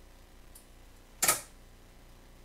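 A single sharp click of a computer mouse about a second and a quarter in, with a faint tick just before it.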